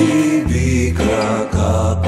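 Instrumental passage of a Greek rock song: sustained bass and chords that change about every half second, marked by short percussive hits.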